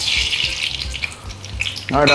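Whole spices (mustard seeds, fenugreek, cumin, peppercorns and coriander seeds) dropped into hot oil in a pan, sizzling sharply as they hit, then settling into a lighter crackle after about a second.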